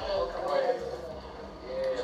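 Quiet, low-level speech: faint voices in a room between louder remarks, with no distinct other sound.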